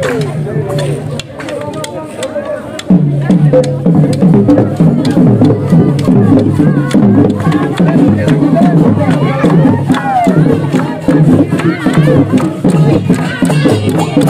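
Bihu dhol drums strike up about three seconds in, a loud, fast, steady beat with sharp clapping over it and a group of voices, after a few seconds of crowd voices.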